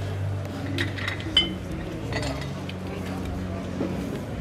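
Murmur of backstage voices with a few sharp clinks, the loudest and briefly ringing about a second and a half in.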